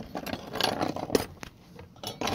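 Corroded metal pieces being picked up and moved by hand on wooden boards: several light clinks and knocks of metal on metal and on wood, with scraping between them.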